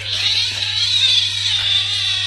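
A kitten meowing in one long, high, drawn-out cry.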